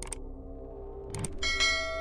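Subscribe-button animation sound effects: a mouse click, a second click about a second later, then a bright bell ring that cuts off sharply, over a low steady music drone.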